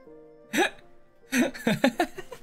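A man laughing in two short bursts, about half a second in and again around a second and a half in, over soft background music with steady held notes.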